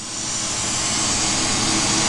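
Lampworking torch flame hissing steadily as it heats borosilicate glass, growing louder over the first second.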